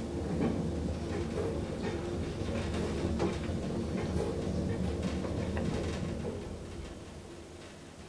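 Elevator car travelling, heard from inside the cab: a steady low mechanical hum with faint rattles, growing quieter over the last two seconds.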